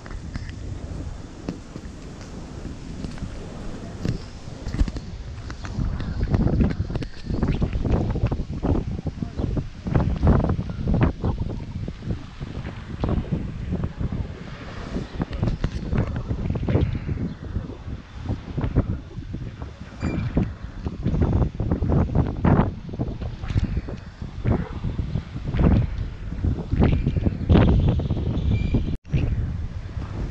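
Storm wind buffeting the microphone in uneven, loud gusts that rise and fall every few seconds.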